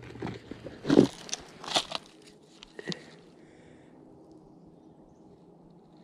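A plastic geocache container being worked out of a hollow in a rotting tree trunk: a few scrapes and knocks of plastic against bark and dry leaf debris within the first three seconds, the loudest about a second in.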